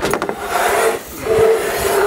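Framed solar panel scraping across a minivan's roof rack crossbars as it is slid onto the roof. There are two long grating strokes with a slight squeal running through them.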